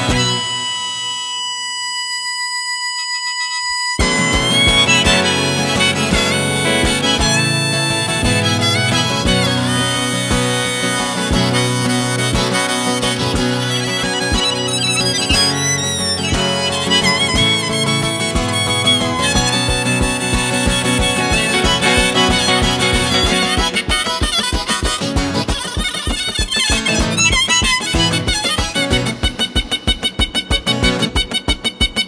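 Instrumental break of a folk song played on harmonica, acoustic guitar and electric guitar. A single long held note sounds alone for the first four seconds. Then the full band comes in with a melody over a steady strummed rhythm.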